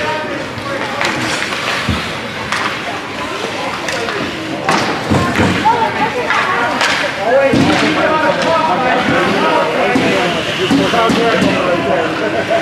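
Youth ice hockey play: sticks and puck clacking and knocking, with sudden sharp impacts scattered through, over indistinct spectator voices.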